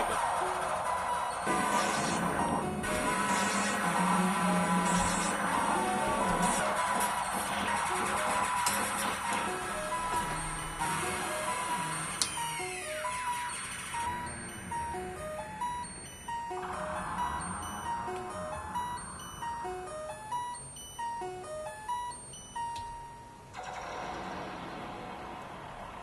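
Modular synthesizer playing: a dense, noisy electronic wash with a falling sweep about halfway through. It then gives way to a sequenced pattern of short bleeping notes that jump between a few pitches, which stops a couple of seconds before the end.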